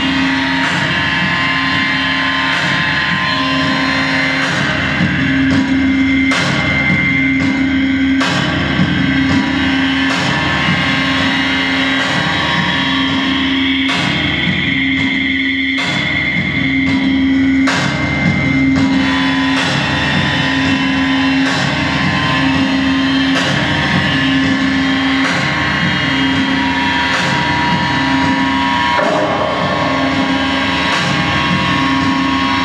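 Live harsh noise music from electronics and effects pedals: a dense, loud wall of distorted noise with a low tone pulsing about once a second. A high whine holds through the middle, and sharp clicks cut across it now and then.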